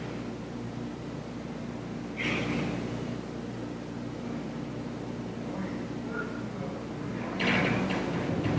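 Quiet room tone with a steady low hum, broken by soft audible breaths through the nose of people sitting in meditation, about two seconds in and again near the end.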